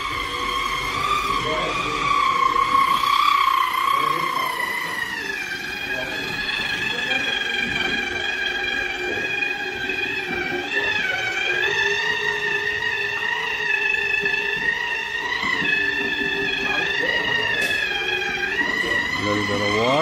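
Handheld electric rotary disc tool (a buffing wheel) smoothing fresh cement render on a wall, its motor giving a steady high whine whose pitch wavers and dips briefly a few times as it is worked against the surface.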